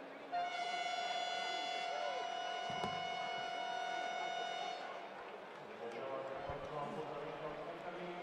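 Basketball arena game horn giving one long, steady blast of about four and a half seconds, starting about half a second in, over crowd murmur. Faint voices follow once it stops.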